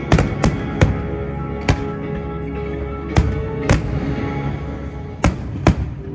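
Aerial firework shells bursting: about eight sharp bangs at uneven intervals, several in quick pairs, over steady music with long held tones.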